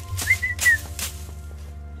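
A person whistling a few short gliding notes over steady background music, with sharp strikes about two to three a second that stop about halfway through.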